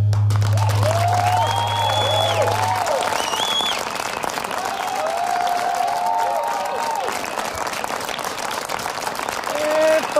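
Studio audience applauding and cheering at the end of a live band's song, with whoops and whistles rising and falling over the clapping. A low held note from the band rings on underneath and stops about three seconds in.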